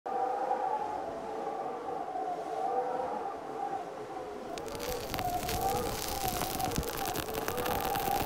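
Intro soundtrack of a few sustained, wavering tones, joined about halfway through by a dense crackling.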